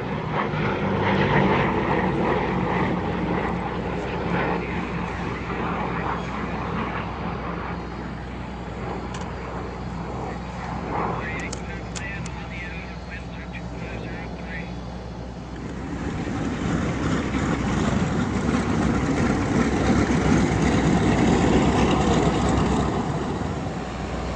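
P-38 Lightning's twin Allison V-12 piston engines and propellers droning steadily in flight. The sound grows louder and fuller about two-thirds of the way through, as the plane passes.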